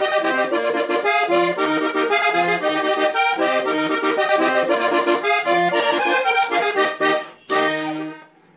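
Three-row diatonic button accordion playing a quick vallenato introduction, with fast runs of notes on the treble buttons. About seven seconds in it breaks briefly and ends with a flourish on a final held chord.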